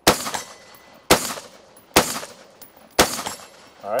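Troy Industries AR-15 carbine in 5.56 mm firing four single shots about a second apart, each dying away quickly after the report.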